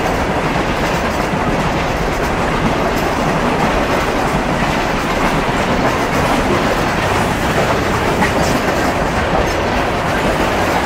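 Freight train cars (tank cars, covered hoppers and coil cars) rolling past close by: a loud, steady noise of steel wheels on rail.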